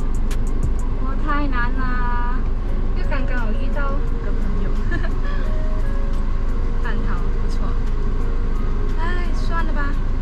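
A woman talking over background music with a steady beat, with a low steady rumble of a car cabin underneath.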